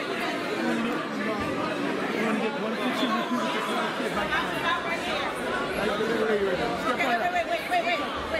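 Many people talking over one another: crowd chatter, with no single voice standing out.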